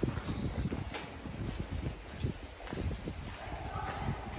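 Footsteps walking over the gritty floor of a railway tunnel, an uneven run of scuffing steps. A faint voice comes in near the end.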